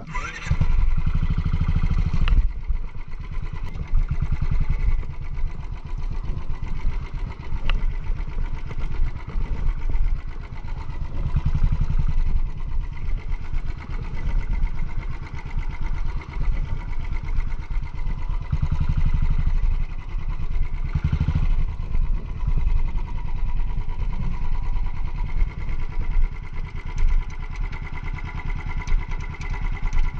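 Royal Enfield single-cylinder motorcycle engine running, a dense low exhaust beat that swells louder and drops back several times, loudest in the first couple of seconds.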